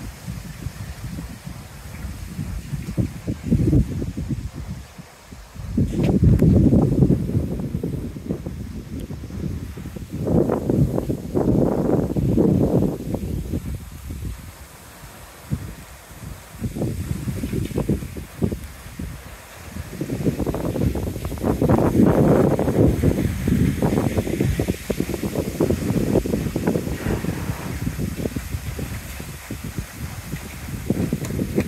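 Gusting wind hissing and rustling through a tall stand of bamboo, rising and falling in waves with three strong gusts. Each gust also buffets the microphone with a low rumble.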